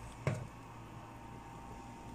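Faint steady hiss of a pot of molokhia boiling on a gas stove, with one short knock about a third of a second in.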